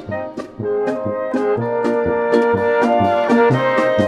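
Brass-led polka music: brass instruments playing a melody and held chords over a steady beat in the bass.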